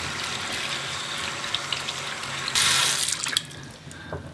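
Cold water running from a bathroom sink tap over hands being rinsed of dish soap, splashing louder for under a second past the midpoint. The tap is then shut off about three and a half seconds in.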